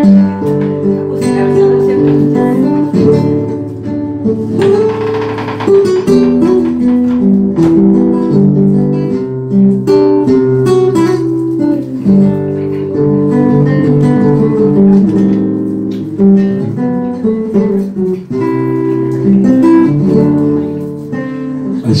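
Solo nylon-string classical guitar playing the instrumental introduction to a ballad, picking out notes and chords. There is a brief denser strummed flourish about five seconds in.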